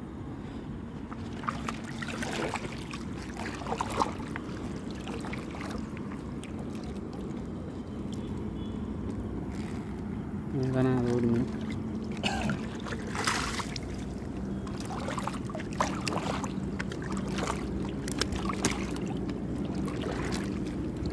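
Wet gill net being hauled by hand into a small fishing boat: irregular splashes, drips and scrapes of mesh and water against the hull. A brief voice sound of about a second comes just past the middle.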